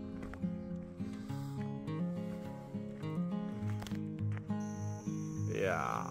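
Background music: a melody of short held notes stepping up and down in a low register.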